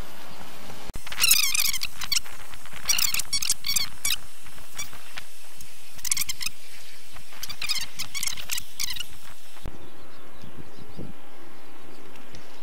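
Fast-forwarded sound: a voice sped up about ten times becomes bursts of rapid, high-pitched squeaky chirps over steady background noise. A little before the end the playback drops back to normal speed and only the steady noise remains.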